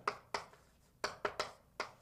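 Chalk writing on a blackboard: a string of sharp ticks and short scrapes as the chalk strikes the board, about seven in two seconds, with a half-second pause near the middle.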